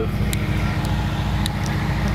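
A Nissan 240SX's engine running steadily as the car drives, with a steady haze of road noise and a few faint light ticks.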